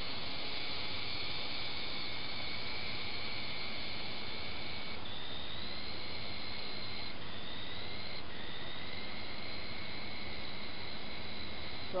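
Syma S301G radio-control helicopter's small electric motors whining over a steady hiss, the pitch jumping up and down in steps several times.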